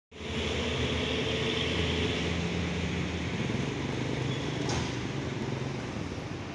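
Vehicle engine running steadily with a low drone and a hiss above it, loudest in the first half; a single short click comes near the end.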